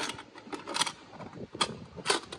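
Two light clicks, about a second apart, as a small green metal socket-set case is handled and its lid begun to open.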